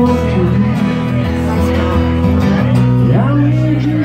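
Live acoustic duo: two acoustic guitars played together, with a man singing into a microphone over them.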